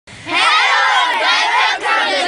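A group of children shouting together in chorus, starting a moment in, with a brief break just before the end.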